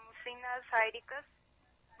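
Speech only, thin and narrow in sound as if over a telephone line, with a brief pause near the end.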